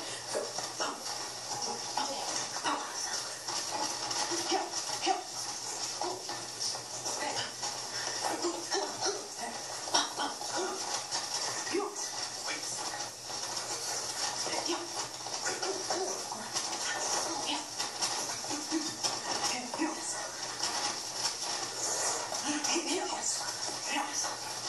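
Boxing gloves and kicks repeatedly smacking focus mitts in a fast sparring combination, with short shouts of 'yeah' between strikes. Heard through a television speaker with a steady hiss.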